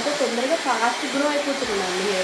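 Handheld hair dryer blowing steadily as wet hair is blow-dried, with a voice talking over it.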